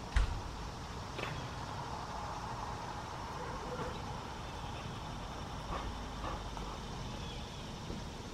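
Steady low outdoor rumble with a sharp thump just after the start, the loudest sound, from the handheld camera being handled, and a softer knock about a second in. A few faint high chirps are heard.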